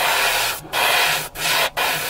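Iwata HP-BH airbrush spraying a light coat of grey paint: a steady hiss of air and atomised paint, broken by three short gaps.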